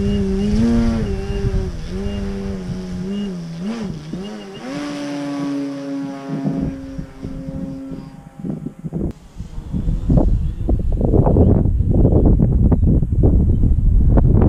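Electric motor and propeller of a 60-inch Pilot RC Laser aerobatic model plane in flight, the pitch wavering and gliding up and down with the throttle, then holding one steady note about five seconds in before fading. From about ten seconds in, gusts of wind buffet the microphone and cover it.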